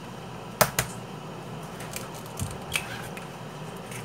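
Eggs being cracked into a mixing bowl: a sharp crack about half a second in, then a few softer taps and knocks as the egg drops in and the shell is handled.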